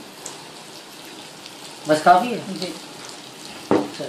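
Breaded fish pieces deep-frying in a pan of hot oil: a steady sizzle. A sharp knock sounds near the end.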